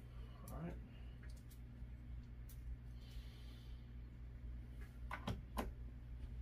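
Small metal parts and hand tools being handled and set down on a towel-covered workbench: a few light clicks, then two sharper knocks near the end, over a steady low hum.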